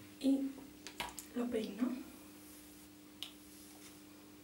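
A woman's voice making two short, soft utterances in the first two seconds, with a few light clicks and a faint steady hum underneath.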